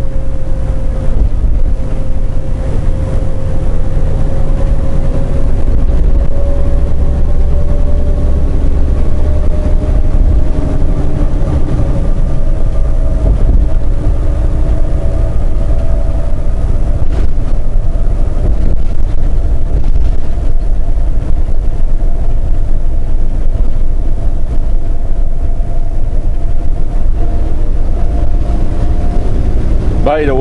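Semi truck running at highway speed, heard from inside the cab: a steady, loud drone of diesel engine and road noise with a faint whining tone that slowly rises in pitch.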